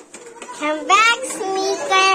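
A young child's voice singing wordlessly: a quick upward swoop about a second in, then a few held notes.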